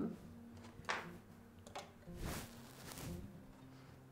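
Quiet handling sounds of a plastic cutting board on a stone counter: two faint knocks, about one second and nearly two seconds in, then a brief rustle a little past two seconds, over a faint low room hum.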